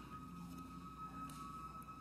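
Faint emergency-vehicle siren from outside the building: a single steady high tone that rises slightly in pitch.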